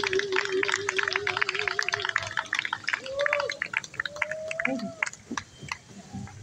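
A female jazz singer holds the song's final note with vibrato for about two seconds while a small audience starts clapping. The applause goes on with a few voices calling out, then thins out near the end.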